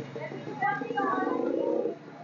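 Background chatter of people talking around a busy fish market stall.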